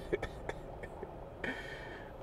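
Faint, steady low rumble inside a car's cabin, with a few small clicks and a brief soft sound about one and a half seconds in.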